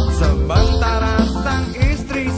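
Indonesian song: a singer's voice over a band with acoustic guitar and a steady low bass line.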